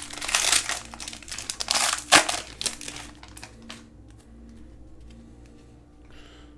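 Foil wrapper of a Panini Prizm basketball card pack being torn open and crinkled, with a sharp tear about two seconds in. The crinkling dies away after about three and a half seconds, leaving only faint handling rustles.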